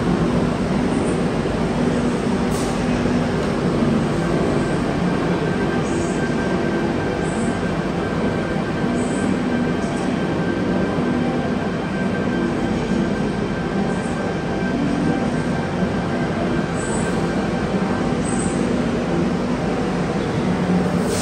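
Tangara double-deck electric train running past along an underground station platform: a steady rumble of wheels and running gear, echoing off the station walls, with a thin steady whine from about two seconds in until near the end.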